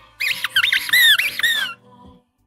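Electronic squeaky chirping sound effect: about six quick chirps, several sliding down in pitch, lasting about a second and a half, typical of a livestream donation alert.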